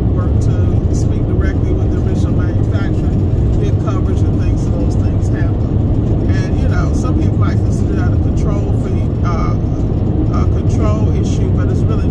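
Steady low road and engine rumble inside a car cabin moving at highway speed.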